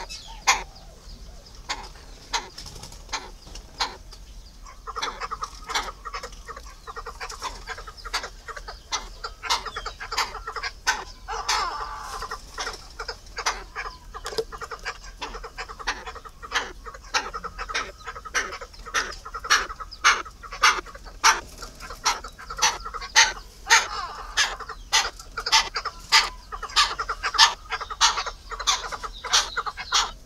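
Fowl clucking: a run of short, sharp clucks that come thicker and louder in the second half, over softer bird chirping.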